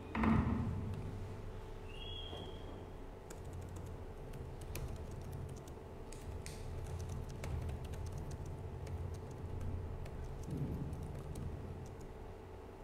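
Laptop keyboard typing: a run of quick key clicks from about three seconds in until near the end, over a steady low room hum. A thump just after the start is the loudest sound.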